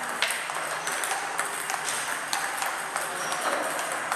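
Table tennis rally: the ball clicks sharply off the rubber paddles and the table several times a second, over steady room noise.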